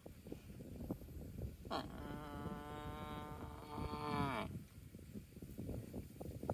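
A water buffalo lowing: one long, steady-pitched call about two seconds in, lasting some two and a half seconds and dropping in pitch as it ends. Low crunching of grass being torn and chewed runs underneath.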